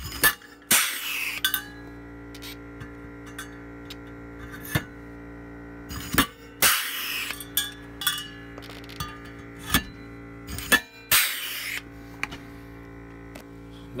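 Hand pop-rivet gun setting rivets through a perforated metal bracket: a series of sharp metallic clicks and snaps as the rivets are pulled and the mandrels break, with three short rasping bursts, over background guitar music.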